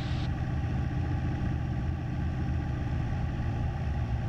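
Cessna 172SP's four-cylinder Lycoming engine running steadily at about 1800 RPM during the run-up magneto check, with the right magneto selected.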